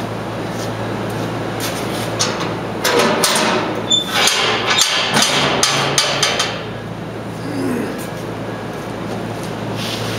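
Steel dump box being tipped up on its pivot on a welded trailer frame: a run of metal clanks and scraping from about three to six and a half seconds in, over a steady low hum.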